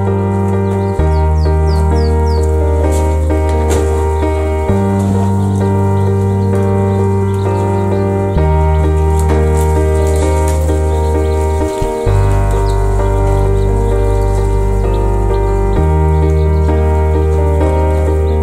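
Background music of held keyboard chords, the bass changing every few seconds. About two seconds in, a short run of high chicks' peeps from grey partridge chicks sounds faintly over it.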